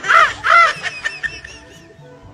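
A man's voice giving short, loud, high cries in quick succession, each rising and falling in pitch, about three a second, then trailing off after about half a second; faint background music underneath.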